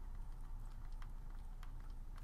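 Faint, irregular light clicks and taps of a stylus writing on a pen tablet.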